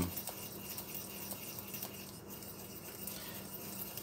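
Faint stirring in a stainless steel saucepan of melted butter, the utensil scraping and lightly ticking against the pot, over quiet room tone.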